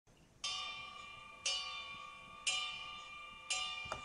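A bell-like chime struck four times, about once a second, each note ringing out and fading: the quiet opening of the song's backing track before the band comes in.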